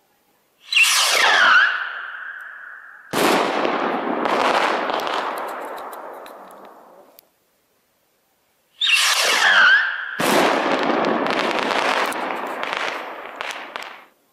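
Two 18 mm firework rockets launch one after the other, each with a whistling rush from its perchlorate–sodium salicylate whistle-fuel motor. About two and a half seconds after each launch comes a sharp bang as its 3-inch nesting shell bursts, followed by several seconds of fading rumble and crackle. The second launch starts about nine seconds in.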